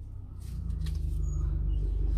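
A steady low rumble like an engine running nearby, with a few faint clicks and rustles about half a second in from a worn toothed rubber timing belt being handled.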